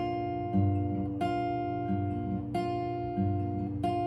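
Acoustic guitar with a capo on the third fret, fingerpicked over an E minor chord shape in a steady thumb-pointer-thumb-middle pattern. Single notes are plucked about every half second and left to ring into one another.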